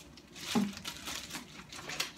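Plastic wrapping on frozen food crinkling and rustling in short, scattered bits as items are rummaged out of a freezer drawer.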